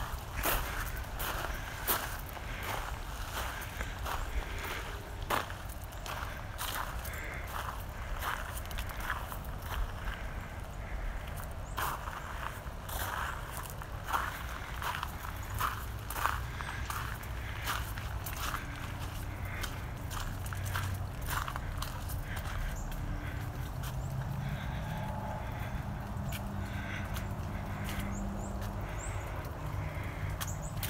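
Irregular crunching and crackling of ice, many sharp clicks at uneven spacing, over a low steady rumble. Near the end a faint low hum comes in.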